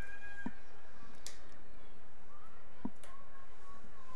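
Steady background noise of the stadium field, with a few faint distant calls and light ticks.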